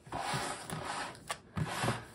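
Cardboard rubbing against cardboard as a box's outer sleeve is slid down over the inner box, followed by a soft bump near the end as the box settles.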